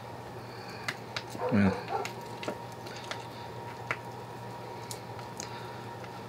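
Scattered light clicks and taps as a silicone hexagonal burger mold and soft plant-based patties are handled, over a steady faint hum.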